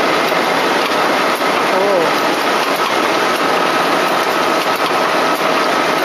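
Automatic silk reeling machine running steadily, with a faint, steady high whine over a loud, busy hall din and background voices.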